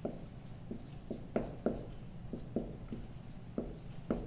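Dry-erase marker writing on a whiteboard: a quick, irregular run of short strokes and taps as letters and numbers are written.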